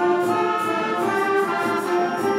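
Student concert band of woodwinds and brass playing sustained chords over a steady percussion beat of about four taps a second.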